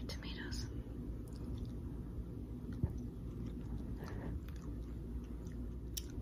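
Quiet chewing and small mouth sounds of someone eating a spoonful of cassoulet, over a low steady room hum, with a soft tap just under three seconds in.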